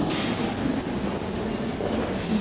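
Steady rumbling background noise of a large gallery hall, with a strong low rumble and no clear single event.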